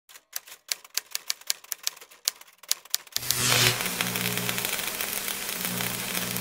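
Typewriter keys clacking in an irregular run for about three seconds. Then a hiss like TV static cuts in, with a low droning hum beneath it.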